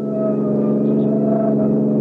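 Radio-drama sound effect of a getaway car's engine speeding off: a steady engine drone that builds in loudness over the first second and then holds.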